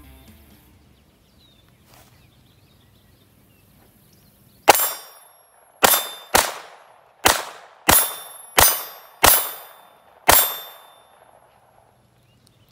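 Semi-automatic pistol fired eight times at an uneven pace over about six seconds, each sharp shot trailing off with a short ringing decay.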